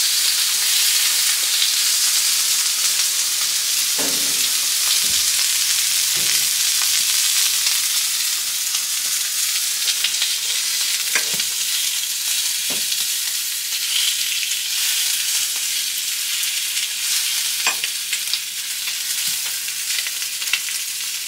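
Pre-cooked sausage patties sizzling in a frying pan, a steady frying hiss as they crisp on the edges, with a few sharp clicks of a fork against the pan as they are turned.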